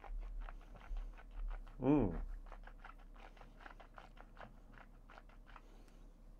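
Faint wet mouth and tongue clicks from a man tasting a sip of whisky, with an appreciative hummed "mmm" about two seconds in. The clicks keep coming, thinning out toward the end.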